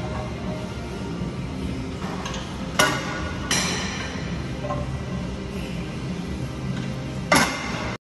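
Iron weight plates clanking with a metallic ring as they are pulled off a plate-loaded leg machine, three sharp clanks, over background music.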